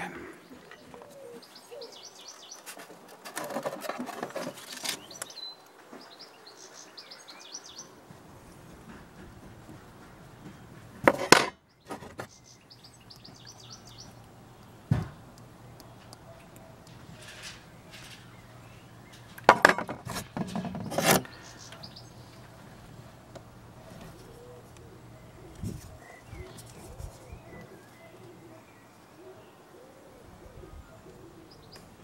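Faint birdsong chirping in the background. Two short, louder bursts of knocking and rustling come about a third of the way in and again near two-thirds, and a faint low hum runs under most of it.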